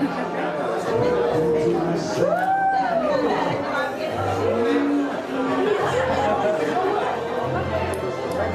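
Party guests chatting in a large hall over background music with held bass notes.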